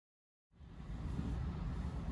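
Train running, heard from inside the carriage: a low, uneven rumble of wheels on the track that fades in after a brief silence.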